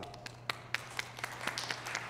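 A congregation applauds in a small, scattered round of clapping, with separate handclaps heard over the light patter.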